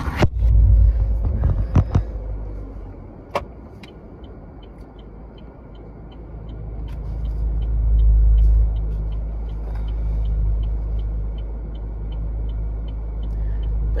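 Car engine and road rumble heard inside the cabin, swelling about eight seconds in, with a few sharp knocks near the start. From about four seconds in, a turn signal ticks steadily, nearly three ticks a second, until near the end.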